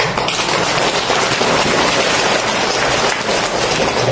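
Audience applauding, a dense, even patter of many hands clapping that starts at once and dies away as the talk resumes.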